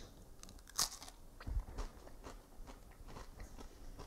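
A bite into a Triscuit wheat cracker topped with cheese spread, then chewing. There is one sharp crunch about a second in, then a few fainter crunches.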